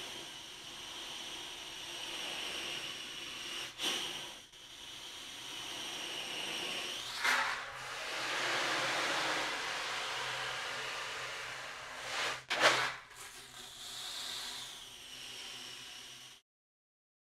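Remo Ocean Drum with Comfort Sound Technology tilted slowly back and forth, the beads inside rolling across the head in a soft, wave-like hiss. The sound swells and fades several times, with brief louder rushes about four, seven and twelve seconds in. The drum is built to sound like rolling waves at reduced volume, without heavy crashing.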